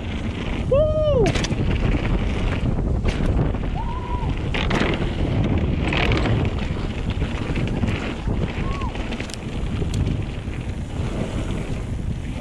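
Mountain bike rolling fast over a dirt trail and across wooden ramp and boardwalk boards, with a steady rumble of wind buffeting the camera microphone and tyre noise, and several sharp knocks and clatters as the bike hits the boards and bumps. A few brief voiced calls from the rider rise and fall over the noise.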